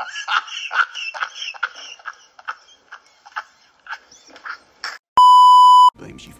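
Very high-pitched laughter in short, rapid pulses, then a loud, steady beep tone lasting under a second near the end.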